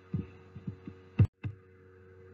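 A few soft low thumps and one sharper click a little past the middle, over a steady low electrical hum. The sound cuts out completely for an instant just after the click.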